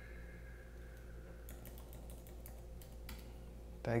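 Computer keyboard keys clicking, a short run of keystrokes starting about a second and a half in, over a faint steady room hum. A spoken word comes in at the very end.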